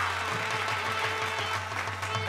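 Birha folk accompaniment: a harmonium holding a note over a quick dholak beat, with the audience clapping.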